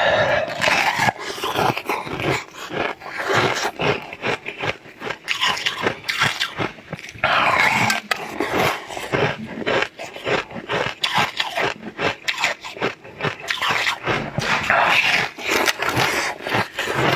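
Close-miked crunching of frozen pink sweet ice, many sharp cracks as the chunks are bitten and chewed, mixed with wet slurping and sucking at the melting pieces.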